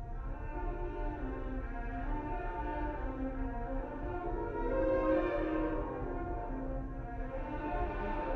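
Recorded concert band music playing: sustained, shifting melodic chords that swell a little about five seconds in, with no distinct snare drum strokes standing out.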